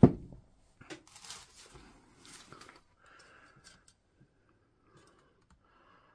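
A knock at the start, then faint rustling and scattered light clicks as multimeter test probes are handled and touched to the battery pack's cell bank.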